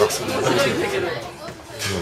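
Several people talking at once, indistinct chatter, dying down briefly before the end.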